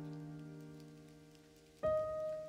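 Slow background piano music: a held chord slowly dying away, then a single new note struck near the end.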